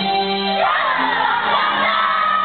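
Stage-musical accompaniment playing, and about half a second in a group of children's voices breaks into a shout together over it.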